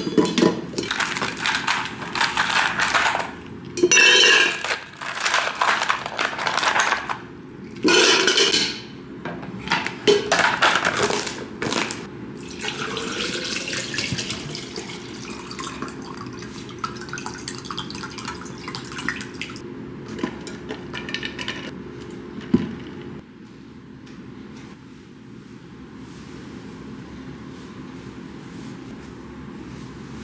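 Ice cubes clattering into a stainless-steel Stanley tumbler in several loud bursts over the first dozen seconds. Liquid is then poured in, the filling sound rising in pitch. Quieter handling follows near the end.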